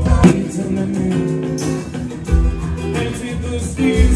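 Live rock band playing a song: guitars, bass and drums with a lead vocal, loud and steady, with drum hits marking the beat.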